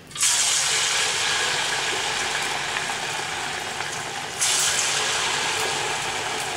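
Sago bonda batter dropped by the spoonful into hot oil, setting off loud sizzling at once; a second sudden surge of sizzling comes about four and a half seconds in.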